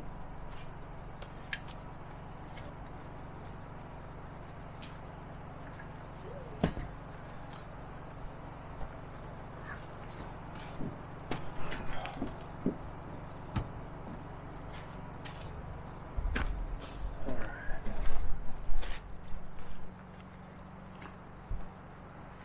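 Scattered clicks and knocks of metal pipe fittings being handled as a brass pitless adapter is fitted onto a T-handled setting pipe, over a steady low hum. A cluster of louder knocks and thumps comes near the end.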